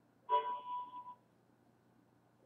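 A short electronic tone, steady in pitch, starting about a third of a second in and lasting under a second.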